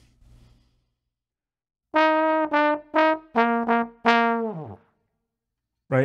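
Tenor trombone playing a short jazz figure of five notes, three higher then two lower, starting about two seconds in. The last note ends in a quick fall made with the embouchure, dropping through the partials rather than a long slide gliss.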